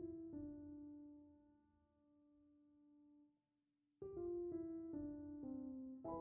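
Soft piano background music: held notes fade out and break off briefly just past the middle, then a few new notes step downward.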